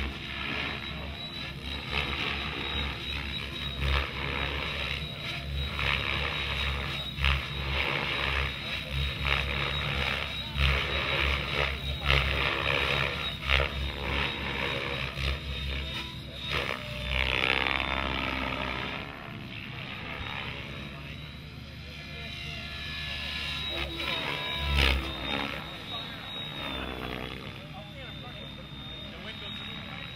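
Mikado Logo electric RC helicopter flying, its rotor and motor making a steady high whine. The pitch slides down and back up a little past the middle and again near the end as it manoeuvres.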